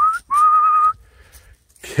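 A person whistling to call dogs: a short rising whistle, then a longer, slightly wavering held whistle of about half a second.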